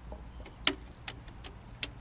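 Four sharp clicks or light knocks spread across about a second and a half, the loudest about two-thirds of a second in, over a steady low hum and a steady high, insect-like buzz.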